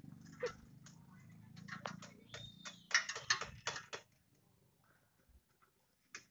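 A scattered run of light clicks and knocks from hands working at the steel body of a 1948 Willys jeep, stopping about two-thirds of the way through.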